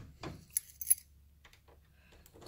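A bunch of keys jingling briefly, with a few small metal clicks, in the first second.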